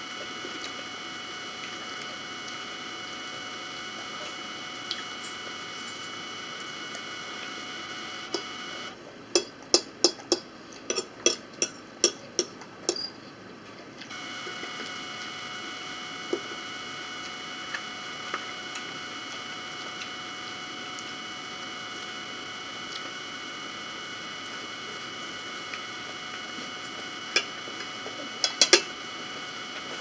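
A steady hum of room or recording noise, with sharp clicks and taps of eating at a table. A run of about ten clicks comes in the middle third, while the hum briefly drops out, and a few more come near the end.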